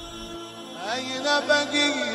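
Devotional chant-style music: a sustained drone, with a chanting voice entering about a second in, sliding up into its notes and growing louder.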